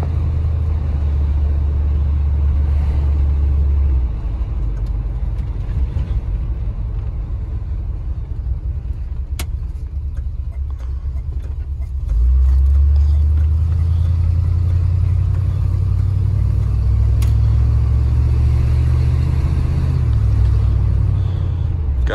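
1974 Ford F-250 pickup heard from inside the cab while driving: a low engine rumble that eases off for several seconds, then jumps up about halfway through as the truck pulls harder, rising gently after that.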